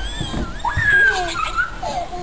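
Toddlers' high-pitched squeals and laughter, the voices sliding up and down in pitch.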